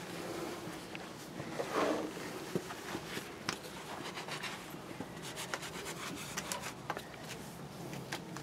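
Cloth rag rubbing and wiping over the cast-iron crankcase of a Lister D stationary engine, with scattered small clicks and knocks as the rag and gloved hands work over the metal.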